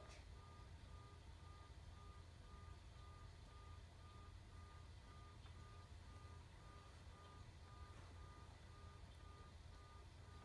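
Near silence: faint room tone with a steady low hum, and a faint high beep repeating evenly throughout.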